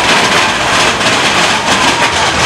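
Mine-train roller coaster running along its track, heard from on board: a loud, steady rush of rolling and rattling noise, with a burst of clatter near the end.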